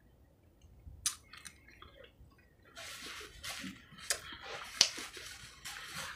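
Quiet eating sounds: a few sharp clicks of a fork against a plate, then soft chewing with more small clicks from about three seconds in.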